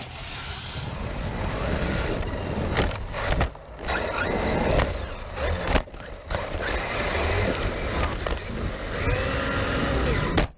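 Arrma Fireteam 1/7 RC truck running hard over loose dirt, heard from its onboard camera: its brushless motor whines and the chassis and tyres rattle on the rough ground. The level dips briefly twice, and the motor whine rises and falls near the end.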